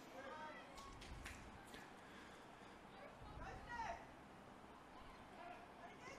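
Faint, distant shouts of voices on a football field, two short calls about three seconds apart, over quiet outdoor ambience.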